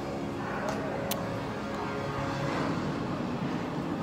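Steady background din of a busy indoor hall, a low hum with faint distant voices, and one sharp click about a second in.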